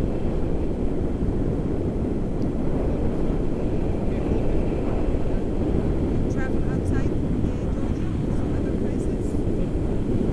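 Steady low rumble of wind rushing over the microphone of a paraglider in flight.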